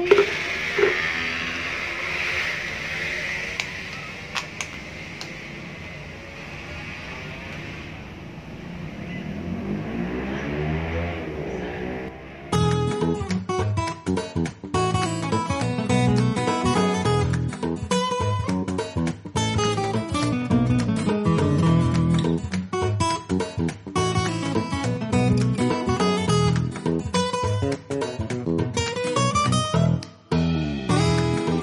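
A steady hiss fills the first twelve seconds or so. Then acoustic guitar background music comes in suddenly and carries on.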